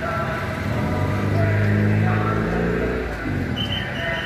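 A road vehicle's engine passing close by, its low steady note swelling about a second in and fading away after about three seconds.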